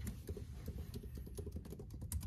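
Typing on a computer keyboard: quick, irregular, faint key clicks.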